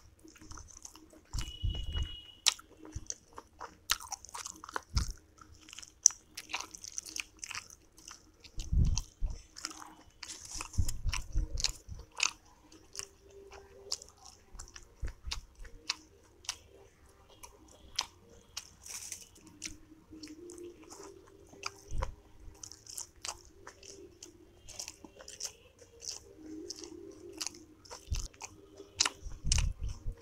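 Close-miked mouth sounds of eating steamed momo dumplings dipped in chutney: soft bites and wet chewing with many small sharp clicks and smacks, and a few low thumps.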